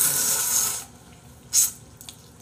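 Spaghetti noodles slurped from a bowl held up to the mouth: one airy slurp lasting about a second, then a brief second one near the end.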